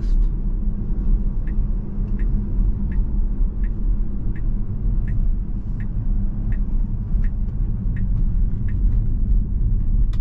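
Tesla cabin with steady low road and tyre rumble from an electric car, and from about a second and a half in the turn-signal indicator ticking evenly, about three ticks every two seconds, as the car signals a turn.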